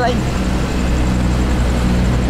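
Steady engine and road noise heard from inside a moving vehicle, a constant low hum with tyre rumble.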